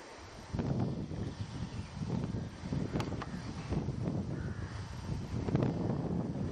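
Wind buffeting the microphone: a rough, uneven rumble that comes up about half a second in, with a sharp click about three seconds in.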